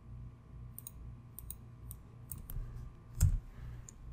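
Scattered clicks of a computer keyboard and mouse while a copied address is pasted into a web browser, with a heavier thud about three seconds in.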